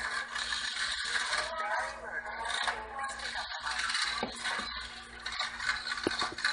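Casino floor din: slot machines clicking and clattering, with a crowd of voices talking in the background.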